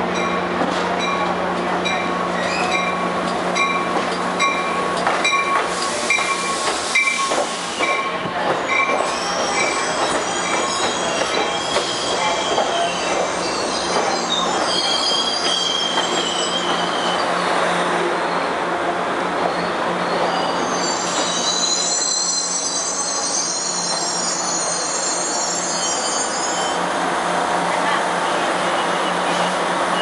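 Amtrak Pacific Surfliner passenger train pulling slowly into the platform over a steady low hum. For the first several seconds a bell rings about twice a second, then the wheels squeal high and shrill for much of the time as the bilevel cars roll past and slow to a stop.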